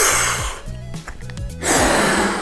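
Two hard breaths blown into a toy balloon through its mouthpiece, heard as two rushes of air about half a second each, one at the start and one near the end. Background music with a steady beat plays underneath.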